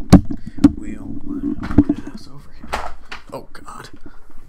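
Handling noise from a handheld microphone being moved: three sharp knocks in the first two seconds over low rubbing and rumble, then softer scuffs and bumps.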